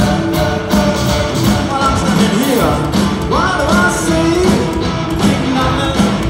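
Live rock band playing with a male lead singer, drums keeping a steady beat of about two hits a second; one sung note slides upward a little past the middle. Heard through a phone's microphone from among the audience.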